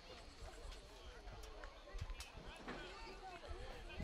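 Faint, distant voices of players and spectators calling out around a soccer field, with a couple of light knocks.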